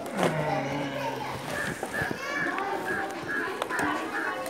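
A man's voice falling in pitch for the first second or so, then several high-pitched children's voices chattering and calling over one another.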